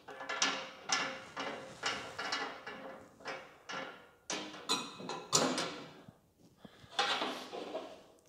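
Metal support brace being spun by hand in its bracket to lengthen it and raise a fold-down grill side shelf, giving a quick run of short metallic scraping clicks, about two to three a second, with a brief pause about six seconds in.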